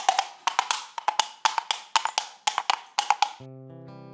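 Percussion music cue: quick wood-block knocks, many in pairs, for about three seconds, then a held chord that comes in near the end.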